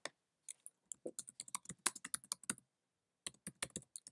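Typing on a computer keyboard: a single click at the start, a run of quick keystrokes lasting about two seconds, a short pause, then another run of keystrokes near the end.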